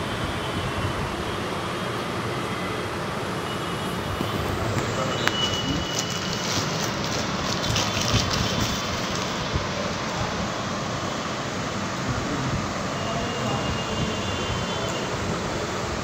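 Steady rumbling background noise, with a few brief clicks and rustles in the middle.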